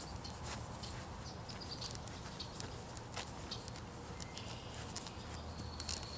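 Presa Canario puppies scuffling and tugging at a rag toy, with irregular thumps and scuffs from their jumping and biting.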